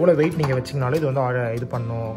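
Background music with guitar and a voice running through it.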